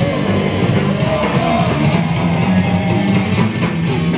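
Punk band playing live: electric guitar, bass and drum kit, loud and steady.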